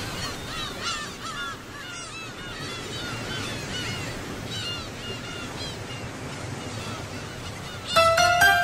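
Gulls calling again and again, short arched cries over a steady wash like surf, with music starting sharply at the very end.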